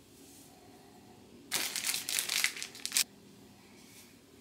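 A burst of close rustling and crinkling, about a second and a half long, starting and stopping abruptly in the middle, from a fabric headband being handled.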